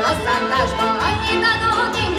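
A woman singing a Hungarian folk song, accompanied by a folk string band of fiddles, accordion, cimbalom and double bass.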